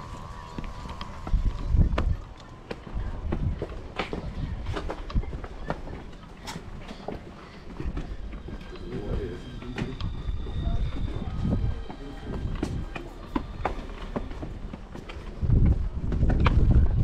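Footsteps on concrete and stone steps, heard as irregular sharp clicks, with bursts of low rumble from wind on the microphone.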